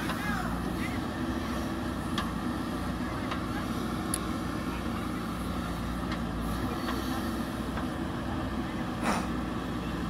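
JCB backhoe loader's diesel engine running steadily while the backhoe swings, dumps soil and digs, with a few short clanks, the most prominent about nine seconds in.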